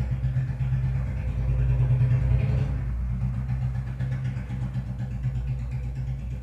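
A steady low rumble from a running engine, with a fast, even pulsing, a little louder about two seconds in.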